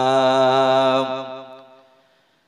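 A man's chanting voice holding one long, steady note of an Arabic recitation through a microphone and loudspeakers. About a second in it breaks off and trails away in reverberation.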